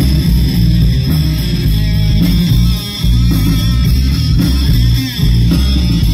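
Live punk rock band playing an instrumental passage with no vocals: electric guitar, bass guitar and drums, loud and driving, with two short dips, about three and five seconds in.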